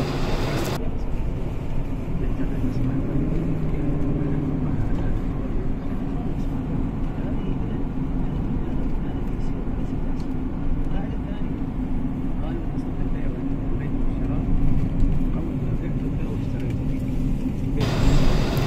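Steady engine and road noise heard from inside a moving car's cabin.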